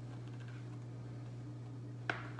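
A few faint ticks and light scrapes of a spatula against a plastic mixing bowl as cornbread batter is scraped out, over a steady low hum.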